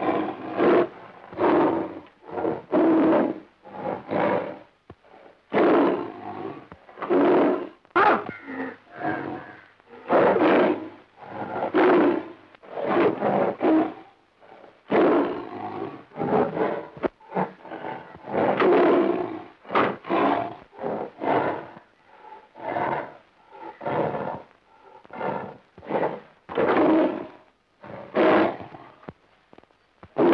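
Tiger roaring again and again, short loud roars about one a second.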